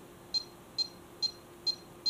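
Bully Dog GT handheld tuner beeping at each button press as its menu is scrolled: four short high-pitched beeps, about two a second.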